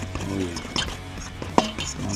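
Background music with two light clicks of a fork against a stainless steel mixing bowl as seasoning rub is stirred into flour.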